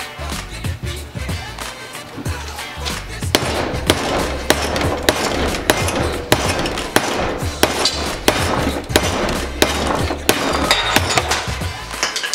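Hammer blows on the metal-capped handle of a Channellock screwdriver clamped upright in a bench vise, a run of sharp strikes about two a second beginning about three seconds in, over background music with a steady beat.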